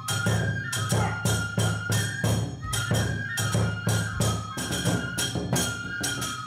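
Onikenbai festival music: a Japanese transverse bamboo flute playing a high, held melody over a large drum and hand cymbals struck in a fast, even beat.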